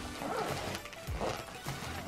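Plastic zip-top bag and fabric packing cube rustling and crinkling as they are handled and closed, with a few light clicks, over quiet background music.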